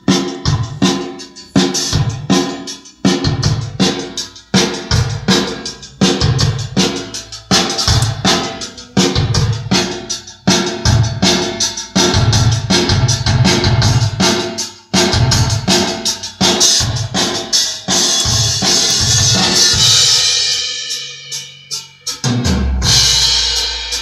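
A recorded drum-kit track (kick, snare and cymbals) playing through a home-built RCA BA-6A clone valve compressor with no gain reduction, turned up into heavy distortion that sounds pretty meaty. A cymbal wash swells over the last few seconds.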